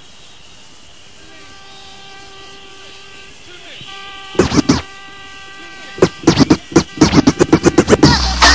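Quiet opening of an old-skool hardcore rave track: soft held synth chords, then a short burst of record scratching about four and a half seconds in. Rapid, loud scratches run through the last two seconds.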